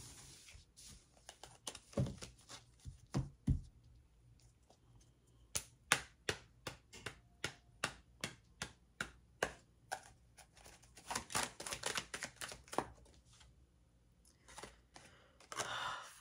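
A deck of tarot cards being shuffled and handled on a table: irregular sharp clicks and snaps of card edges, with a quicker flurry about two-thirds of the way through.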